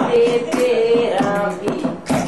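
Singing over a steady rhythmic beat, the voice holding drawn-out notes.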